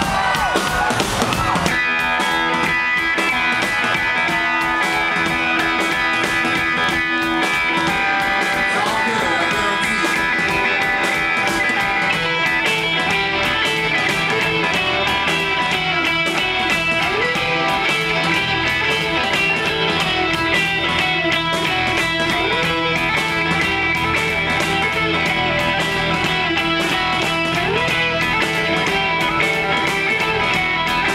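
Live rock band playing a song's opening: electric guitars settle into held, ringing chords about two seconds in over a steady beat. The low end fills in about twelve seconds in.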